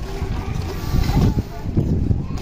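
Wind buffeting the microphone in an uneven low rumble, with children's voices faint behind it.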